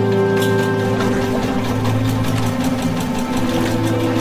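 Background music with held tones, and a boat's engine running underneath it with a fast, even mechanical beat.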